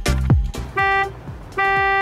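Two electronic buzzer beeps held at one steady pitch: a short one just under a second in and a longer one starting about a second and a half in. Background music runs under them, with a deep falling bass hit at the very start.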